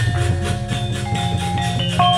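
Javanese gamelan playing: a deep, sustained low tone under struck bronze metallophone notes at several pitches that each ring on.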